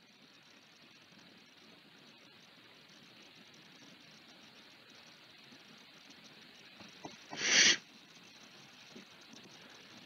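Faint steady hiss of an open voice microphone, broken about three quarters of the way through by one short, loud breath on the microphone, with a small click just before it.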